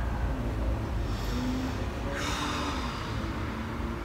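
A person breathing out through the mouth, one breath about two seconds in, over a low steady rumble.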